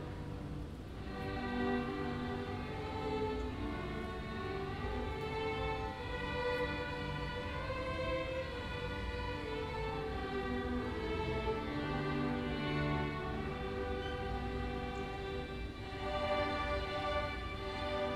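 Orchestra led by bowed strings (violins, cellos, double bass) playing a slow passage of held notes. It thins briefly about a second in, then swells again.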